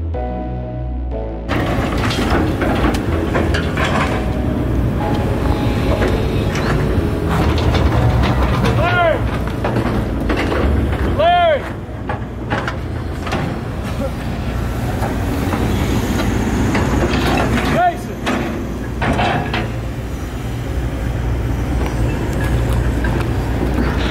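Excavators breaking out concrete slab: diesel engines running under load with repeated clanks and knocks, and three short squeals that rise and fall in pitch. The owner takes the machines for ungreased, their booms loose and clacking. A music track ends just after the start.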